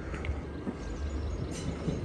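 Passenger train running over a brick railway viaduct: a steady low rumble.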